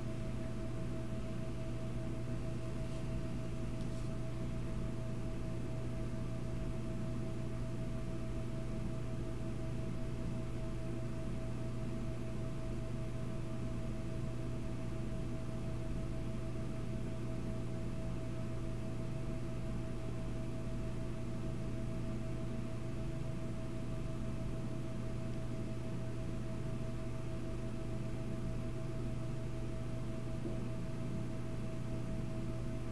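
Steady low electrical or machine hum with a fainter, higher steady tone above it, unchanging throughout.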